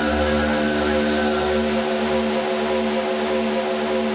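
Psychill electronic music in a quiet breakdown: a sustained synth pad chord with no beat, and a low bass underneath that fades away about halfway through.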